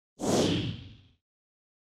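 A single whoosh sound effect that starts sharply and fades out over about a second.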